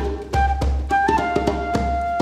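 Flute and djembe playing live. The flute plays a few short notes, then holds one long note from just past a second in, over steady djembe strokes.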